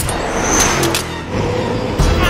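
Truck driving at highway speed: the engine running under steady road and wind noise, with a few short sharp clicks about half a second in.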